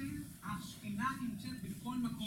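Speech only: a man talking in short phrases.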